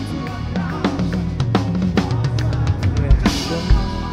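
Drum kit played live with a band: a quick run of snare and tom strokes, a cymbal crash a little after three seconds, then heavy bass drum beats, over a steady bass line.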